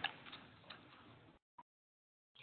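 A few faint ticks over low, fading room noise, then the sound cuts out to dead silence, broken once by a tiny click.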